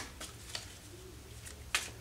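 Tarot cards being handled and gathered into a deck: faint soft clicks and slides, then a couple of crisp card clicks near the end, over a low steady hum.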